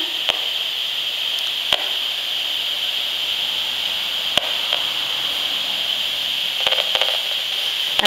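Audio output of an HF 35C RF analyser held at a bank of smart meters: a steady hiss broken by scattered sharp clicks, a few close together near the end. The clicks are the analyser voicing the meters' pulsed radio transmissions.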